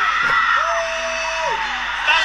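Excited screaming and yelling: a long held cry that falls in pitch at its end, over the crowd noise of a concert livestream playing from a phone.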